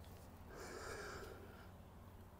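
A single short breath by a person, lasting about a second, over a faint steady low hum.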